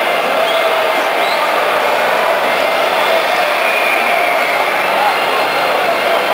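A large crowd of football supporters chanting and singing together in the stands, a dense, steady mass of many voices.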